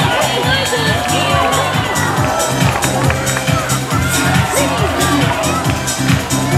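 Show music with a steady, even beat playing loudly, with voices from the crowd mixed in.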